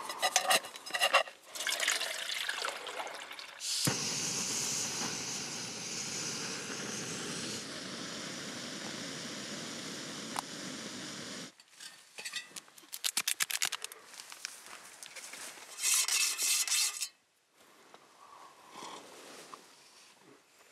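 Handling of camping gear: rustling and clicking. About four seconds in, a steady even hiss starts abruptly and runs for about seven seconds before cutting off. It is followed by quicker clicking and a loud brief rasp near the three-quarter mark.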